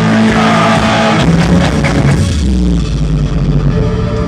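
Live rock band with electric guitar playing loudly through a club PA. About two seconds in the full band drops away, leaving a low sustained bass drone.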